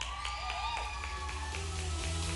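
Audience applauding and cheering, with scattered claps and gliding whoops from several voices; music starts up near the end.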